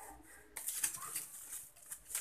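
Faint rustling and crinkling of plastic packaging with small clicks as a VGA cable is handled and unwrapped, starting about half a second in.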